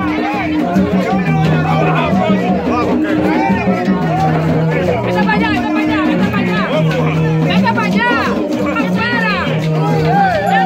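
Loud music with a low bass line repeating every couple of seconds, under a dense crowd of voices shouting and singing over it; high shouts stand out about eight seconds in.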